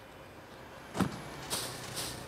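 Black plastic carrier bag rustling and crinkling as it is handled and opened, in short bursts from about halfway through, after a brief sharp sound about a second in.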